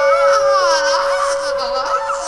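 Soprano voice swooping up and down in pitch in quick, laugh-like vocal gestures, over a steady held note from the ensemble, in a contemporary chamber music piece.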